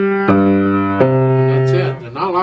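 Grand piano played in its lower register: a few low left-hand notes struck slowly one after another, each held and ringing for about a second.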